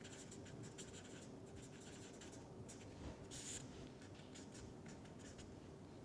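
Felt-tip marker pen writing on paper, faint: a run of short scratchy strokes as letters are written, with a longer, louder stroke a little after three seconds in.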